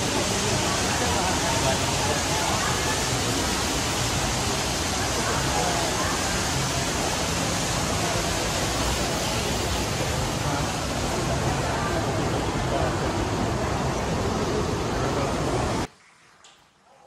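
Steady, loud rushing noise with faint crowd voices beneath it, cutting off abruptly near the end.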